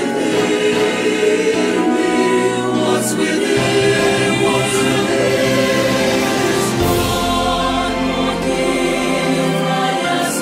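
Slow Christian choral song with held chords. A deeper bass note comes in about seven seconds in.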